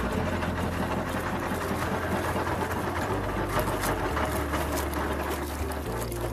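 Small wooden fishing boat's engine running steadily.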